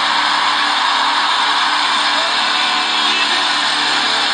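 Worship band music: a loud, steady, dense wash of sustained sound with no distinct strikes.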